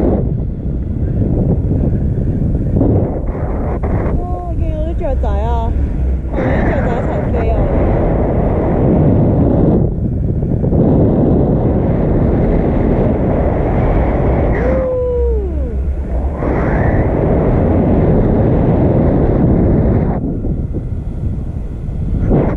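Wind buffeting the camera's microphone in flight under a tandem paraglider: a loud, steady rush heaviest in the low end, easing briefly twice.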